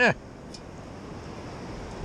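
Steady wash of shallow surf over the sand, mixed with wind noise, after a brief spoken "yeah" at the start.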